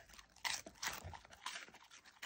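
A goldendoodle chewing a roe-filled dried capelin: a quick, irregular run of crunches as it bites through the crispy fish.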